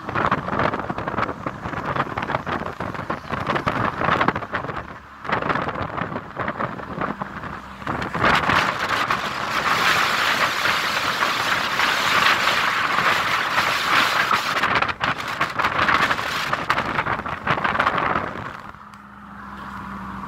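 A car driving at speed, with wind rushing past and buffeting the microphone over the road noise in uneven gusts. Near the end the rush dies down, leaving a steady low hum from the car.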